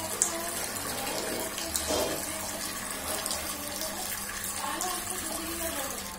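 Water running from a wall tap in a thin stream and splashing onto a stone floor, a steady hiss that stops near the end as the tap is turned off.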